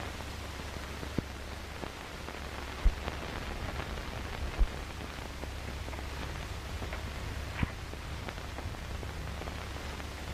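Steady hiss and low hum of an early-1930s film soundtrack, with a few sharp pops through it, the loudest about three and four and a half seconds in.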